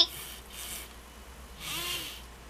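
Small servo motors in a RoboHoN robot's arm whirring briefly as it lowers its arm from a wave, with a second short sound near the end.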